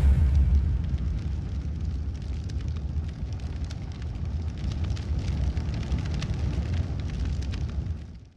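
A cinematic fire-explosion sound effect: a deep boom at the start that settles into a long, low rumble, with scattered crackles like burning embers.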